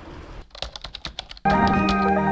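A quick run of keyboard-typing clicks, about ten in a second, as a typing sound effect. About a second and a half in, background music with mallet-percussion notes starts abruptly and is louder than the clicks.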